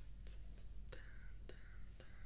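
Soft, close-miked mouth sounds into a binaural microphone: a few faint clicks and a breathy, whisper-like hiss between sung lines.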